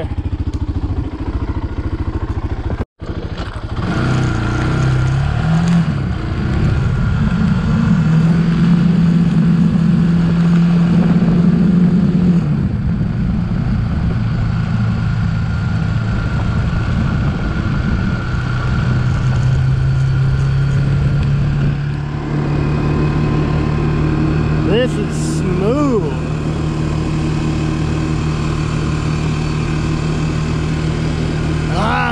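ATV engine running while being ridden along a dirt road. The pitch climbs a few seconds in, holds steady, drops about halfway through, then settles into a steady run. The sound cuts out for an instant near three seconds in.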